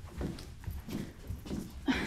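Soft low knocks and rustling of a shoe being pulled on and a foot shifting on a hard floor.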